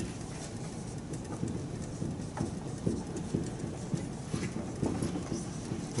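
Dry-erase marker writing on a whiteboard: a faint run of irregular small taps and brief squeaks as the letters are drawn.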